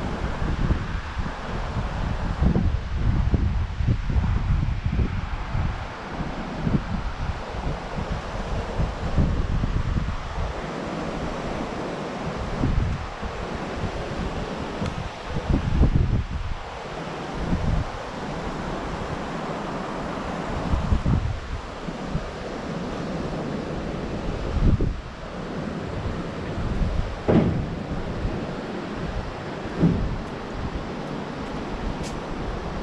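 Wind buffeting the camera microphone in irregular gusts, over the steady wash of surf breaking on the beach.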